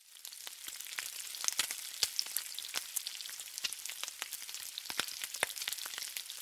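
Food frying on a hot flat-top griddle: a steady high hiss dotted with many sharp crackling pops.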